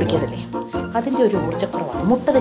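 A woman's voice speaking dialogue over background music.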